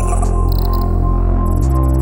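Electronic music: a heavy sustained synth bass that steps to a new note about a second and a half in, under a steady high tone and short high-pitched chirping blips.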